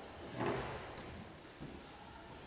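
A single dull thud from a medicine ball about half a second in, during wall-ball reps, over a faint gym background.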